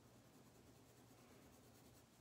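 Faint scratch of a watercolour pencil stroked lightly over paper while blending, barely above room tone.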